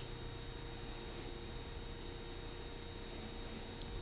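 A pause in speech: the faint, steady hiss and hum of the room and sound system.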